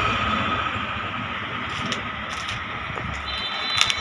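Steady background noise, an even rushing hiss with a faint high hum, with a few light clicks in the middle.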